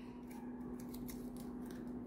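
Faint small rustles and clicks of fingers handling a wet cotton string and a thin plastic disc as the string is threaded through a small hole, over a steady low hum.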